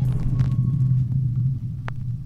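Deep, steady electronic rumble of a logo-reveal sound effect, with a couple of faint glitchy clicks.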